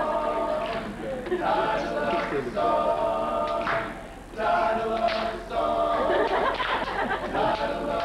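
All-male a cappella group singing close-harmony chords without instruments, in short held phrases of about a second each, with a brief break about four seconds in.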